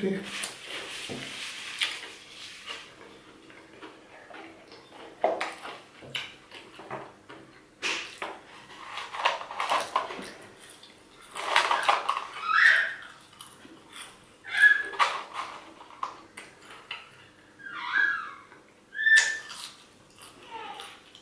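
Close-up eating sounds: crunching and chewing of a crispy fried chicken sandwich and French fries, with irregular crisp crunches. From about halfway on, a few short high-pitched vocal squeals come in between the bites.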